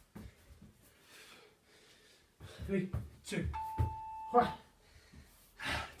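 A man breathing hard and grunting while doing walkout exercises. Partway through, a single steady electronic beep of about a second sounds, an interval timer marking the end of the 20-second work period.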